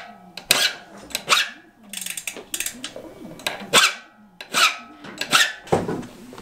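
A metal file rasping across a bicycle freehub body in repeated short strokes, skimming off the raised lumps where the sprockets had dug into the splines.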